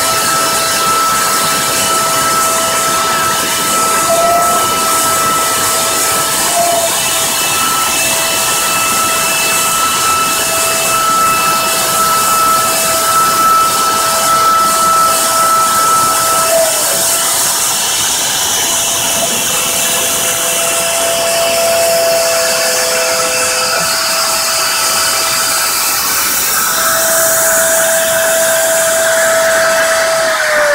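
CNC router spindle milling a carbon fibre sheet: a loud, steady high whine over a hiss of cutting, with a few brief blips in the pitch.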